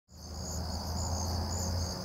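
Crickets in a field trilling in a steady high-pitched chorus, with a low hum underneath; the sound fades in at the very start.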